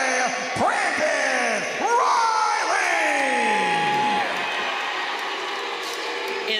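Ring announcer's drawn-out, bellowed call of a fighter's name, the voice swooping up and sliding down in long stretched syllables and ending on a held note about four seconds in. A crowd cheers underneath.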